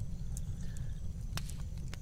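Log fire crackling, with a few sharp pops over a low steady rumble.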